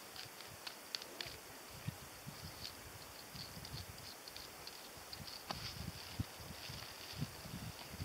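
Faint outdoor background with soft, irregular low thumps and scattered small clicks.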